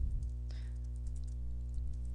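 Computer keyboard keys clicking as a short word and a brace are typed, over a steady low hum.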